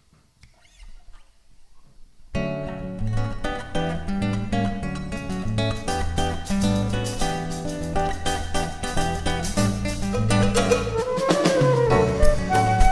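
After a brief near-quiet pause, a small band starts a song about two seconds in: acoustic guitar with electric guitar and drum kit, and a flute playing over it.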